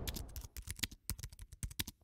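Rapid, irregular keyboard-typing clicks, a sound effect laid under an on-screen caption, about eight to ten clicks a second.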